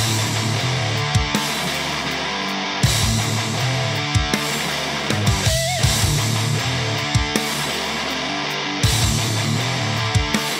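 Background rock music with electric guitar over a steady drum beat.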